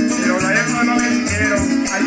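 Llanero band playing: arpa llanera harp over electric bass, cuatro and maracas, in a steady rhythm.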